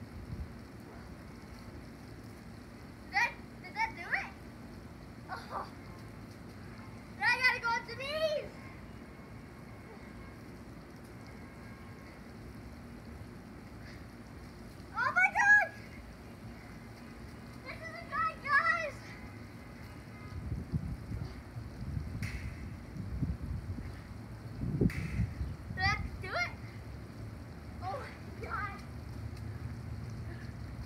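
A child's voice in short, high shouts and exclamations, coming in a few separate bursts over steady outdoor background noise.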